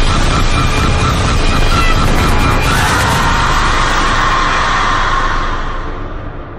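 Horror-trailer sound design: a loud, dense wall of noise with a rapid pulsing tone, swelling into a held high tone about three seconds in and fading near the end.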